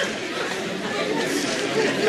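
Many voices chattering at once: an audience murmuring together.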